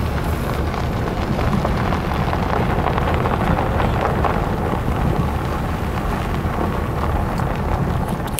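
Steady rush of wind and road noise from a moving vehicle, with wind buffeting the microphone, heaviest in the low end.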